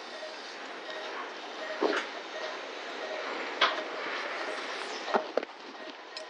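Operating-room background: a steady hiss with a faint short beep repeating about every two-thirds of a second, and a few brief clicks or knocks from handling.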